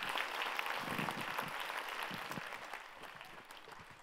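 Audience applause, a dense patter of many hands clapping that fades away over the last couple of seconds.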